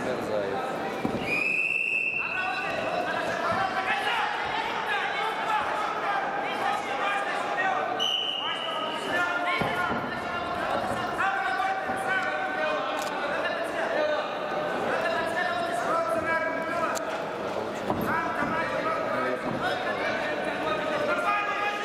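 Voices calling out in a large, echoing sports hall during a wrestling bout, with a short high whistle blast about a second in and another around eight seconds, typical of the referee's whistle.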